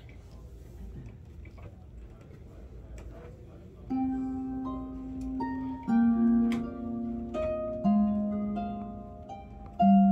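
Low room tone for about four seconds, then a harp begins playing: plucked notes that ring on, with deeper bass notes struck about every two seconds.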